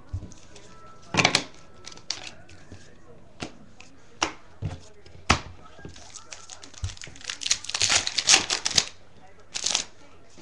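Foil trading-card pack crinkling and cards being handled, in short sharp rustles a few seconds apart, then a dense run of crinkling and rustling near the end.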